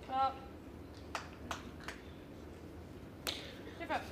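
A quiet indoor hush broken by a short voice sound just after the start, a few sharp clicks spread through the middle, and a brief falling voice sound at the very end.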